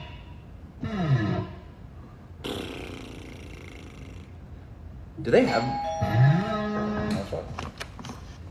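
A man's wordless vocal sounds: a voice sliding down in pitch about a second in, a hiss in the middle, then a voice sliding up and holding a steady note near the end.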